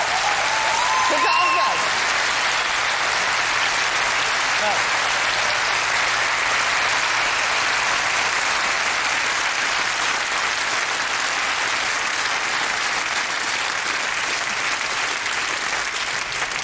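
Studio audience applauding steadily and at length, with a single voice calling out over the clapping in the first two seconds.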